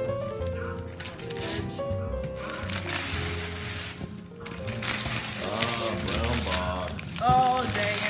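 Wrapping paper being ripped off a large cardboard box, a rough tearing stretch about three seconds in, over background music with held notes. Voices come in near the end.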